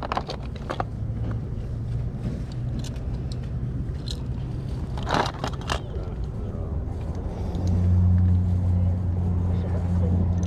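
Small plastic toys clicking and clattering as hands sift through a plastic basket of them. A low vehicle engine hum runs underneath and gets louder about three-quarters of the way in.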